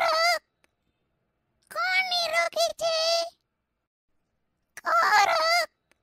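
A high, squawky, bird-like cartoon voice calling "Ko'ruk?" ("Who is free of disease?") three times, each call about a second long with a short pause between them.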